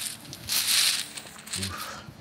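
Cloth drawing bag of game pieces being handled and passed, the fabric and the pieces inside rustling in a short burst about half a second in.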